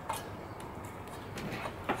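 Light bulb being turned in a ceiling light socket: a few faint clicks, the sharpest near the end.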